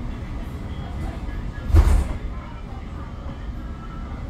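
Bozankaya tram running along street track with a steady low rumble, and one sudden loud thump about two seconds in.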